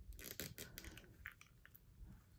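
Near silence with a few faint clicks of plastic in the first second, as a small chain flail accessory is fitted into an action figure's hand.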